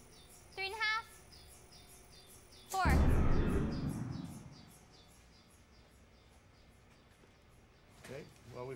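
High-voltage capacitor discharge firing a plasma experiment: a sudden loud bang about three seconds in, dying away over the next two seconds.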